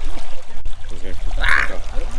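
People talking over the steady rush of river water running through the sluices, with a short hiss about one and a half seconds in.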